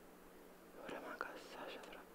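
Faint whispering, starting about halfway through, with a couple of soft clicks.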